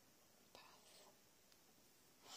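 Near silence: quiet room tone, with one faint, short hiss about half a second in.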